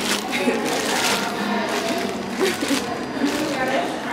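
A thin plastic seafood-boil bag crinkles and rustles close up as it is pulled open, over background music and voices.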